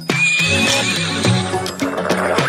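Background music with a stepping bass line, and a horse whinny sound effect with a quavering high pitch through the first second and a half.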